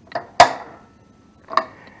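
Control knob of a Heat Hog portable propane heater being turned, giving three sharp clicks; the second is the loudest and rings briefly. The heater does not light: the knob is being turned without first being pushed in.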